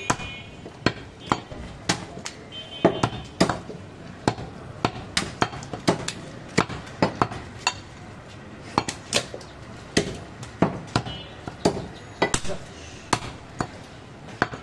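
A cleaver chopping goat meat on a wooden log chopping block. The sharp chops come irregularly, about two a second, with a short pause just past the middle.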